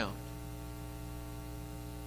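Steady electrical mains hum made of a stack of even, unchanging tones.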